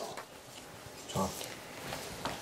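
Quiet room tone with one short, low vocal noise from a person about a second in, a brief grunt-like sound rather than words.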